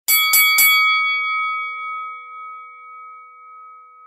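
A bell-like chime struck three times in quick succession, then left ringing and slowly fading over about four seconds.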